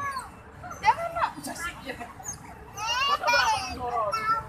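Several people's voices talking over one another, some of them high-pitched, with a louder burst of voices near the end.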